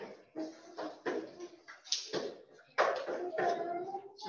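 Quiet, broken fragments of a voice through a video-call connection, in short bursts with no clear words.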